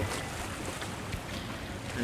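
Purse-seine fishing boat passing at speed: a steady rush of water from the bow wave mixed with the boat's engine noise, with wind on the microphone.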